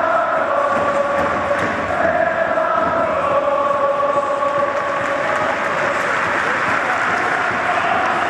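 A large football supporters' section chanting in unison, one of the player-call chants, with long sung notes carried by thousands of voices.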